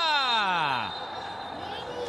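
A man's long drawn-out cry that slides down in pitch and fades over about a second, followed by steady background noise.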